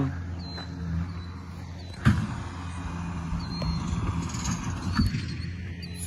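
Bobcat skid-steer loader's engine running steadily at a distance, with a sharp knock about two seconds in and another near the five-second mark.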